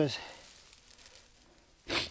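A bundle of dry pine needles being handled, with a faint rustle and then one short, loud crunch near the end as it is lifted.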